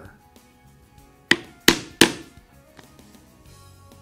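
Three sharp mallet strikes on a hand-held drive punch, cutting a hole through thick vegetable-tanned leather on a cutting board. Faint background music plays underneath.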